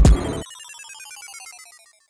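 A hip hop beat with heavy bass kicks cuts off about half a second in. It gives way to a retro video-game 'game over' sound effect: a fast run of electronic beeps falling in pitch and fading out.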